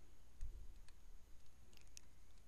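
Faint clicks and taps of a stylus on a tablet screen during handwriting: a few scattered ticks over a steady low hum.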